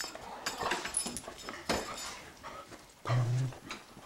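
Small jingle bell on a string hanging from the door tinkling as it swings, with the light knocks of an Icelandic Sheepdog moving about on the floor. About three seconds in, the dog gives a short, low whine.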